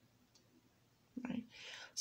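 Near silence for about a second, then a woman's short murmur followed by a breathy hiss as she draws breath to speak.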